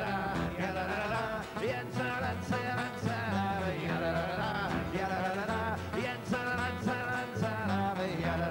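A man singing an up-tempo folk song, backed by guitar and double bass.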